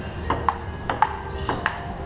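Table tennis rally: the ball clicking off the paddles and the table in quick pairs, about six sharp ticks in two seconds.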